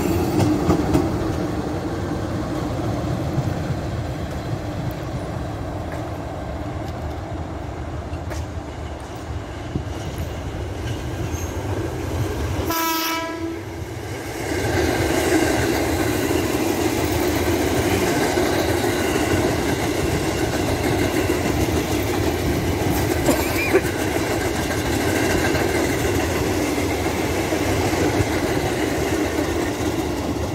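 A CC206 diesel-electric locomotive running past, its engine drone mixed with wheels clacking over the rail joints. A short horn blast sounds about halfway through. After that a JR 205 electric commuter train approaches, a steady rumble with a humming tone over it.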